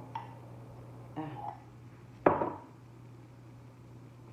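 Glassware clinking as a drink is poured from a glass carafe into a small glass jar: one sharp clink a little past two seconds in, after a softer knock about a second in, over a steady low hum.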